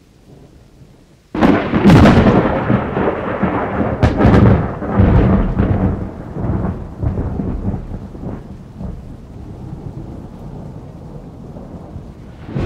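A thunderclap: a sudden loud crack about a second and a half in, then a rolling rumble that swells again a few seconds later and slowly dies away into a steady hiss of rain.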